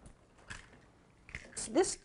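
Two faint short clicks of eggs being cracked open over a ceramic mixing bowl, followed by a woman beginning to speak near the end.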